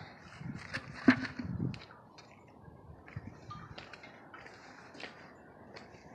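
Faint rustling and scattered light taps of handling and movement, with one sharper tap about a second in.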